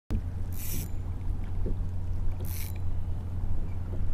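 Wind buffeting a GoPro's microphone on a kayak, a steady low rumble, with choppy water around the hull and two brief splashy hisses, about half a second in and again near two and a half seconds.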